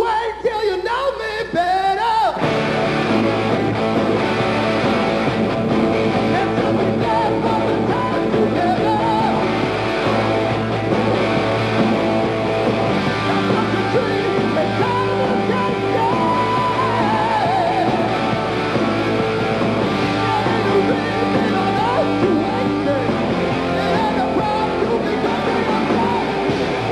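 Live hard rock band starting a song with singing: a brief opening phrase, then the full band with drums and guitars comes in about two seconds in and plays on steadily.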